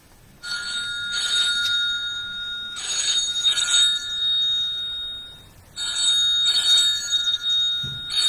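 A phone's electronic ringtone ringing, two steady high tones held for several seconds, cutting out briefly about five seconds in and then starting again.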